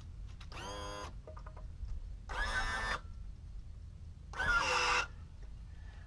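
Three short squeaks as a transom saver brace is worked into place against an outboard motor's lower unit: one about half a second in, one in the middle and the loudest near the end.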